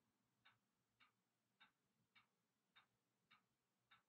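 Faint, evenly spaced ticking, a little under two ticks a second, seven ticks in all, against near silence.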